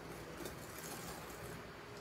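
Wire whisk stirring thin cake batter in a glass bowl: a faint, steady stirring sound.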